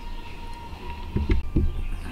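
A few dull knocks and bumps from the camera being handled and moved, over a steady low hum.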